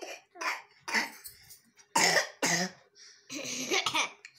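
A person coughing: a run of about five short coughs, the last a little longer.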